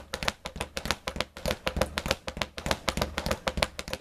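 Speed bag being punched in the linking technique, struck on both sides in a steady rhythm, the bag rebounding off its board in a fast, continuous run of sharp knocks.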